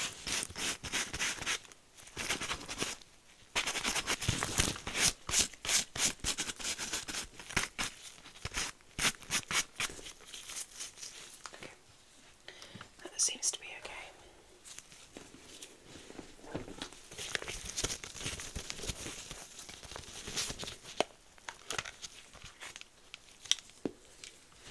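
Close-miked handling sounds from disposable-gloved fingers tapping, scratching and rubbing a zip wallet: rapid crisp taps and scrapes, thick at first, thinning out about halfway through and picking up again later.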